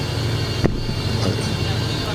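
Steady low hum and background noise through the microphones of a sound system, with a single sharp click about two-thirds of a second in.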